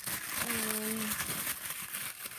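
Packing tissue paper crinkling and rustling as it is handled, with a short hummed voice note about half a second in.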